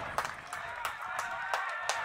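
Football ground sound from the pitch side: distant shouts from players and spectators, with a few sharp clicks.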